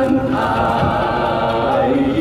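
A man and several women singing together into handheld microphones, holding long, wavering notes.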